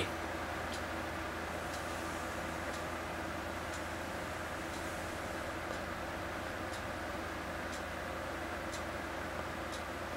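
Steady room tone: a low, even hum with faint short ticks about once a second.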